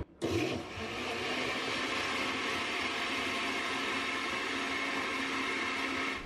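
Countertop blender with a glass jar and stainless steel base running steadily, blending passion fruit pulp with water. It starts just after being switched on and stops near the end, kept short so the seeds are not ground up.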